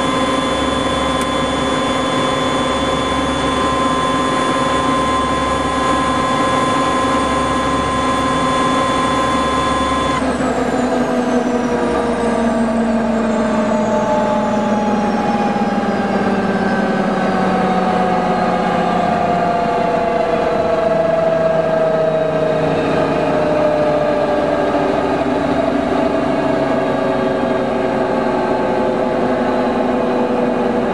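MD500 helicopter winding down after its turbine has been shut down. Steady whines run until about ten seconds in, then cut off, and a set of tones begins gliding slowly down in pitch as the machinery coasts toward a stop.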